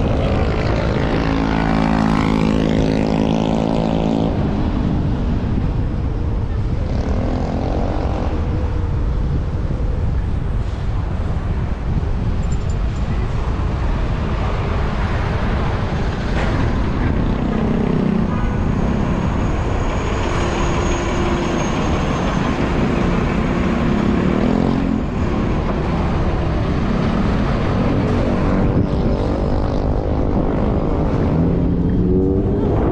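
Wind buffeting the microphone of a camera riding on a moving electric scooter, a steady low rush, mixed with surrounding city traffic. In the first few seconds a passing vehicle's engine is heard falling in pitch.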